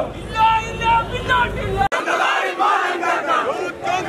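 A crowd of protesters shouting slogans in Malayalam, many raised voices together. About two seconds in the sound breaks off abruptly and resumes without the low background rumble.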